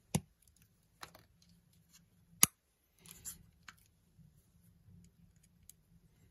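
Small screwdriver and tiny screws being worked at a lens's metal mount adapter: a few sharp metal clicks and ticks, the loudest about two and a half seconds in, with a short scratchy rustle just after three seconds.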